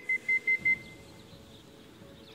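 Electronic pigeon clock at the loft beeping as it registers arriving racing pigeons: about five short, high, even beeps in quick succession in the first second, then they stop.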